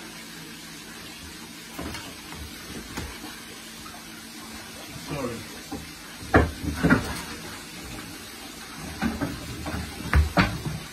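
Water splashing and sloshing in a large aquarium as a person reaches in after a tarpon, with several louder splashes in the second half. A steady hiss of running water from a hose sits underneath.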